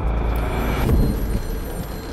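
A deep rumbling sound effect that swells to a peak about a second in and then fades, with a faint high steady ringing tone above it.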